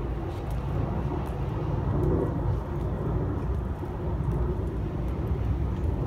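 Steady low outdoor rumble, like distant traffic, with faint clicks about every half second from the guards' marching footsteps on the stone plaza.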